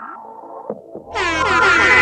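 Trap track intro: a quiet, falling stepped synth line with short downward sweeps, then about a second in a loud DJ air-horn sound effect blasts in over the beat.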